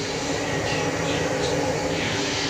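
Water jets of a dancing fountain spraying, a steady rushing hiss.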